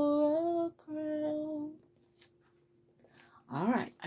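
A woman singing solo, holding the last two long notes of a hymn's final line, then falling silent; a brief vocal sound comes near the end.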